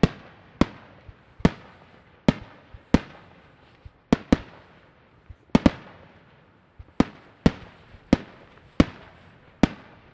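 Aerial firework shells bursting, more than a dozen sharp bangs at irregular intervals, some in quick pairs, each trailing off in a short echo.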